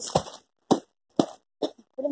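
Four short, sharp taps about half a second apart, the first the loudest.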